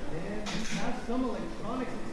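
People talking, with a short sharp crash about half a second in as two antweight combat robots collide and the spinner robot is knocked across the arena.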